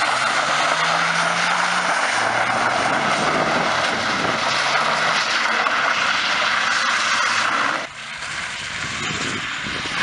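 BMW E34 525tds's M51D25 turbodiesel straight-six revving up and down as the car slides with its rear wheels spinning, under a loud steady hiss of tyres on the asphalt. The sound drops suddenly to a quieter level about eight seconds in.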